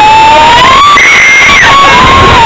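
Roller coaster riders screaming and whooping in long wails that rise and fall in pitch, one after another. Under them is the loud rumble and wind rush of the moving mine-train coaster.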